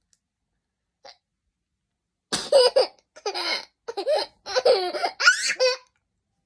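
A young child laughing hard: a run of high-pitched giggling laughs in four or five short bursts that starts about two seconds in and stops just before the end.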